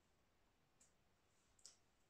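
Near silence of room tone, with two faint short clicks a little under a second apart, the second one louder.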